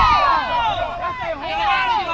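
Several women's voices shouting and calling out over one another at once, with no clear words.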